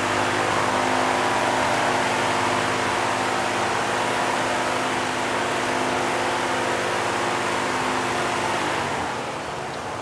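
A steady rushing noise with a low, even hum under it, easing off shortly before the end.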